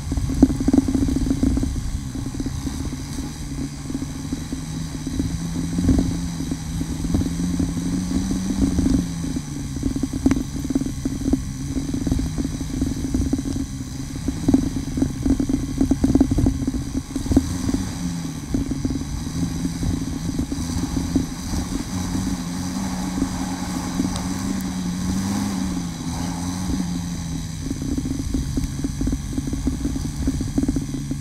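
KTM Freeride 350's single-cylinder four-stroke engine running under way on a rough dirt trail, its pitch rising and falling gently every few seconds. Frequent short knocks and clatter from the bike run through it.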